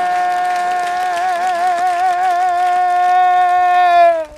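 A man singing one long, high held note, with a wavering vibrato partway through.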